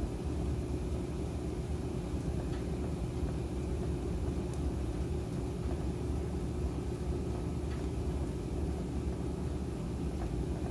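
1960 Kelvinator W70M top-loading washing machine in spin, its motor and spinning basket giving a steady low rumble with a few faint ticks.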